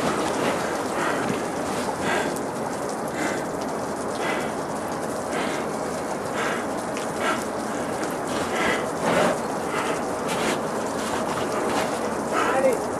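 Steady wind noise on the microphone, with brief louder rushes about once a second.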